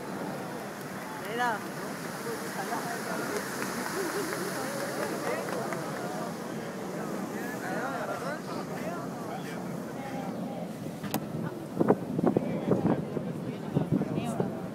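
Steady rush of the Bellagio fountain's water falling as spray, under crowd voices chattering. A few louder bursts come near the end.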